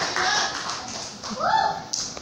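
Audience applause thinning out into scattered claps, with a voice calling out once near the start and again about a second and a half in.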